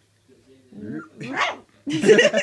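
A three-week-old Labrador puppy growling in short spells, then giving a small high bark about a second and a half in.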